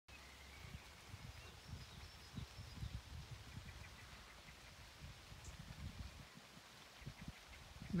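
Faint outdoor ambience of light rain, with low gusts of wind buffeting the microphone and a few thin, high bird chirps in the first few seconds.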